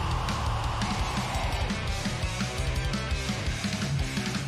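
Progressive metal song playing, with electric guitar and drums.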